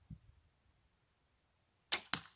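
A wooden bow being shot: a low thump as the string is released just after the start, then near the end two sharp cracks about a quarter second apart, the loudest sounds.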